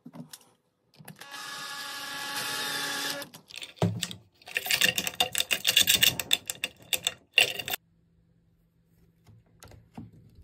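A steady whine for about two seconds, then a thump, then steel chain links clinking and rattling against each other for about three seconds, ending in a sharp clink.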